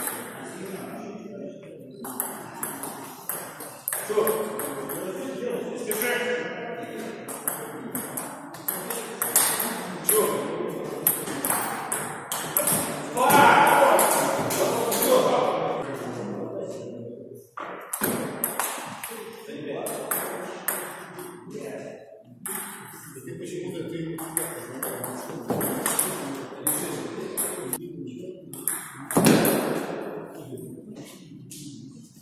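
Table tennis ball clicking in quick runs off the paddles and the table during rallies, in a large hall, with people talking in the background.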